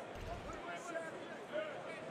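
Arena crowd noise, a mass of faint overlapping voices, reacting to a made basket plus foul, with a low rumble near the start.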